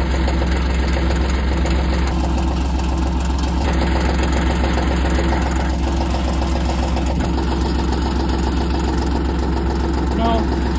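Utility vehicle (Kawasaki Mule) engine idling steadily, a constant low drone with no change in speed.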